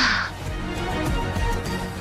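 Steady background music score with sustained tones, opening with a short, harsh hissing burst.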